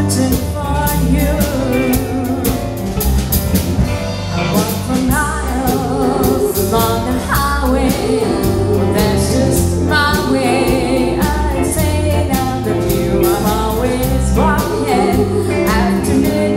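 A woman singing lead with a live country band of electric guitar, drums and keyboard.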